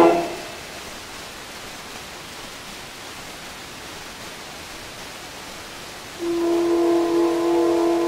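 An acoustic-era orchestral recording played from a 78 rpm shellac disc. A chord cuts off at the start, leaving about six seconds of the record's steady surface hiss, softened by a low-pass filter. About six seconds in, a single held note with rich overtones enters and sustains.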